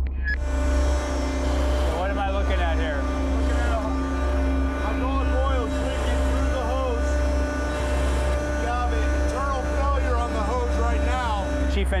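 Steady hum of running machinery in a warship's engine room, with a man's voice over it.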